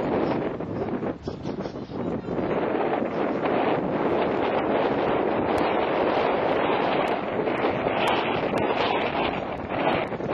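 Wind blowing on the camcorder microphone, a steady rushing noise with brief dips in the first couple of seconds.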